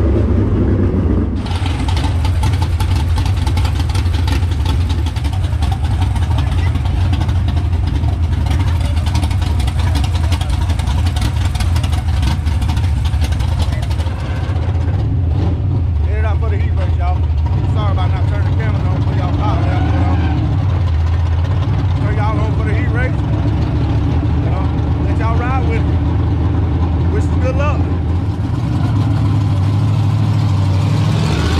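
Dirt late model race car's V8 engine running at a steady idle, a deep, even rumble throughout. Voices come faintly over it in the second half.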